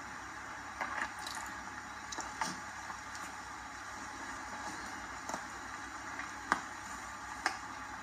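Quiet outdoor ambience: a steady faint hiss with a handful of scattered sharp clicks and crackles, the loudest about six and a half seconds in.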